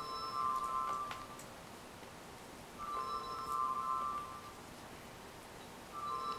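Call ringtone playing from a laptop: a short chiming ring of several steady tones lasting about a second and a half, repeating about every three seconds, three times in all, with the last ring starting near the end.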